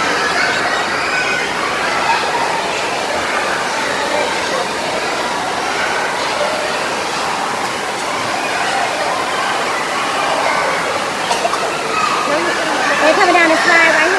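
Indoor pool hall ambience: a steady rush of running water under a continuous hubbub of swimmers' voices, with a child's voice calling out louder near the end.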